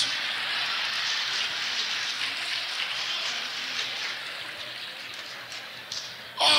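Large audience applauding in a hall, a dense even patter that slowly dies away.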